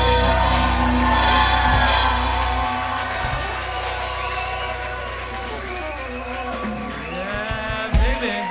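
Live band music with singing, heard through a large room, with the crowd shouting and whooping along. A heavy bass note holds through the first few seconds, then the low end thins and drops away about seven seconds in.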